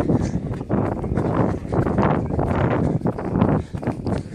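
Jogging footfalls, about three a second, with wind rumbling on the microphone of a phone carried by a runner.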